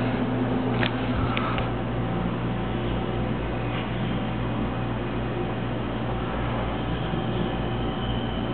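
Steady low hum under an even hiss: room noise from running equipment, with a couple of faint clicks about a second in.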